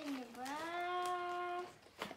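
One drawn-out wordless vocal sound, about a second and a half long, that dips in pitch and then rises to a held note before stopping.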